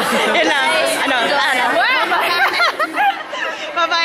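A woman laughing close to the microphone, amid voices and chatter from people around her.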